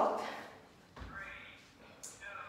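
A woman's words trail off. About a second in comes a soft low thump as a person goes down onto hands and knees on an exercise mat, followed briefly by a faint voice.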